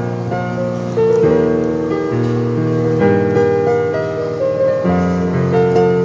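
Digital piano playing a slow melody over sustained left-hand chords, the bass note changing about once a second.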